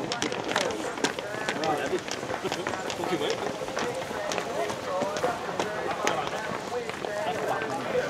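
Several men talking at once, indistinct overlapping chatter from players and onlookers as the teams walk out, with scattered sharp clicks and taps throughout.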